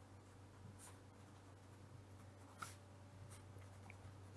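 Faint scratching of a pen writing on paper, a few short strokes, over a low steady hum.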